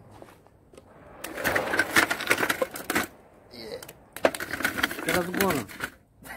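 Homemade tracked robot's drive and track links clattering rapidly as it is driven against a log held fixed in its path, in two bursts: one of about two seconds starting about a second in, and another in the second half, with a short voice near the end.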